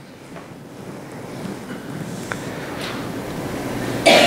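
Hissing room noise in a hall during a pause in speech, slowly growing louder, with one faint click about two seconds in.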